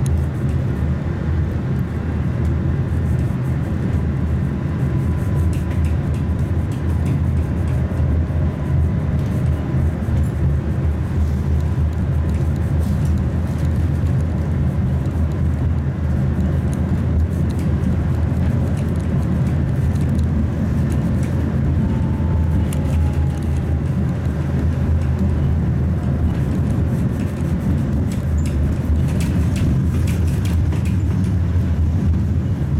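Inside a moving Tatra T3 tram: the steady low rumble of the car running on its rails, with faint thin whines that come and go.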